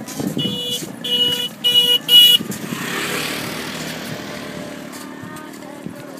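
A vehicle horn beeps four short times in quick succession, each beep a little louder than the last, followed by a brief rush of noise.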